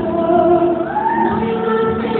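Live music with singing: held, sustained sung notes over a musical backing.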